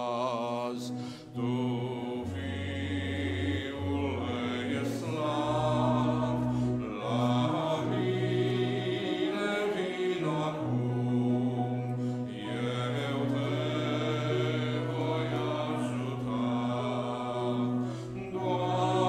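Congregation singing a Romanian hymn together, accompanied by a grand piano.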